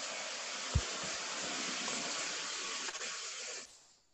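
A steady hiss that cuts off suddenly near the end, with one low thump about a second in.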